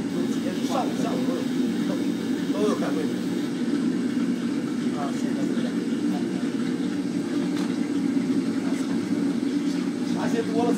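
Steady drone of commercial kitchen equipment, with faint voices talking in the background during the first few seconds.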